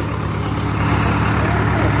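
Diesel tractor engine idling steadily, its low firing pulses even, with crowd voices in the background.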